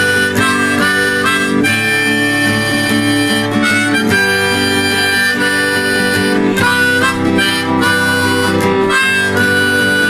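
Harmonica in G, played from a neck rack, with acoustic guitar accompaniment: long held notes and short phrases over a steady guitar part.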